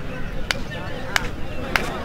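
Three sharp hand slaps about half a second apart, made by two kabaddi players sparring with their hands.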